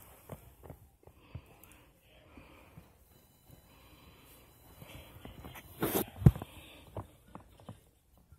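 Handling and movement noise: scattered soft knocks and rustles, then a loud brushing rustle about six seconds in followed at once by a sharp thump.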